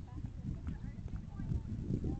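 Wind buffeting the camera microphone: an irregular low rumble that grows stronger toward the end.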